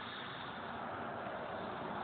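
Steady hum of traffic on a busy road, heard as an even background noise with no single vehicle standing out.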